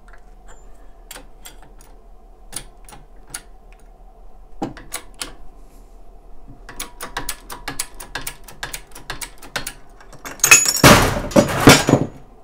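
Shop press being worked with a run of metallic clicks, sparse at first, then about four to five a second, as the ram pushes a shaft down through a bearing held in a bearing separator. Near the end a loud metal clatter lasting about a second and a half as the shaft and punch are pressed free and drop.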